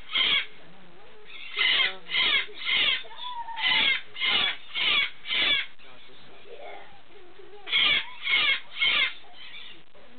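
Moluccan (salmon-crested) cockatoo giving short, loud calls in quick runs of three or four, about two a second, with pauses between, as part of a show-off display.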